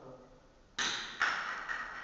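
Two sharp knocks of a hard object, about half a second apart, the second followed by a brief metallic ringing that dies away.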